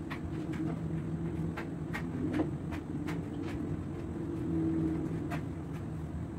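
Steady low mechanical hum with a few held tones, overlaid by faint, irregular light ticks.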